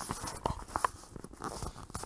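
Irregular clicks and rustles of headphones and their cable being handled close to the microphone, as the headset is adjusted to check for missing audio.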